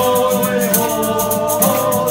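Group of voices singing a sea shanty together, holding a long note and moving to a new one near the end, over strummed acoustic guitar and a shaken tambourine.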